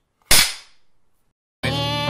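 A single sharp bang with a short fading tail, then music starts near the end.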